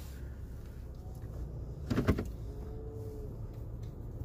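Steady low rumble of a vehicle idling, heard from inside the cabin. A short, louder sound comes about halfway through, followed by a faint held tone.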